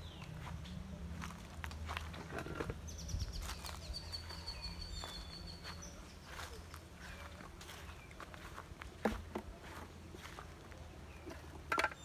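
Footsteps through grass as someone walks, with a high whistled bird call about three to five seconds in.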